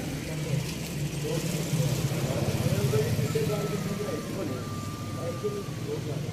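Outdoor ambience: a steady low engine-like rumble under faint, indistinct voices of people talking in the distance.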